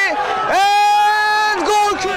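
Speech: a man's long, drawn-out shout, held on one steady pitch for about a second.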